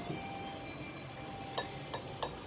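Steel knife and fork cutting grilled deer heart on a ceramic plate, with two light clinks of metal against the plate near the end, over a faint steady room hum.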